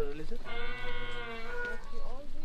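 A person's voice holding one long note for about a second and a half.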